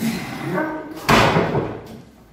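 A man straining with grunts as he lifts an atlas stone, then about a second in a heavy thud as the stone lands on the wooden top of the loading platform, with a loud grunt over it.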